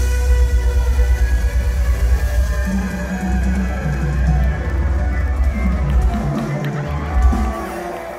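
A live mor lam band playing, with a strong bass line.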